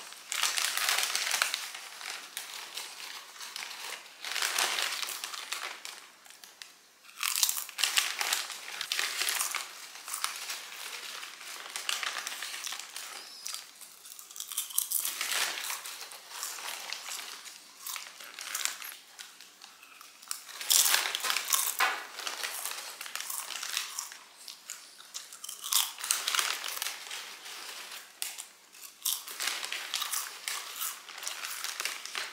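Close-up crinkling of a small plastic snack wrapper handled in the fingers, with crunchy chewing, in irregular bursts of a second or two, some louder than others.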